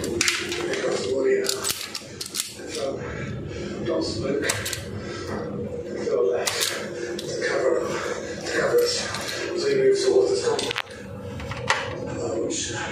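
A man's voice talking in the background, with repeated sharp metal clicks and taps from hand tools working wires into the terminals of a circuit breaker panel.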